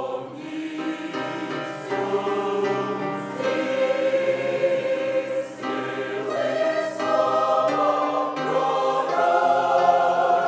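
Large mixed church choir of men's and women's voices singing a Christmas hymn in held chords. A new phrase comes in right at the start, and the singing grows louder toward the end.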